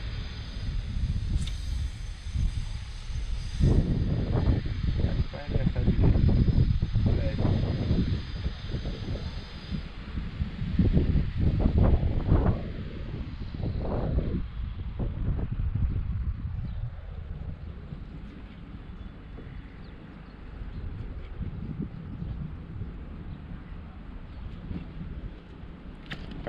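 Wind buffeting the camera's microphone, a gusting low rumble that is strongest in the first half and calmer after about 13 seconds.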